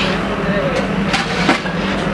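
A long metal rod stirring and scraping through a large metal pan of thick mixture, knocking sharply against the pan twice just past the middle, over a steady low hum.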